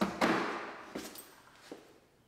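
Handling noise from a cordless cellular shade being picked up off a miter saw table: a couple of knocks, then scraping and rustling that fade away, and a small click near the end.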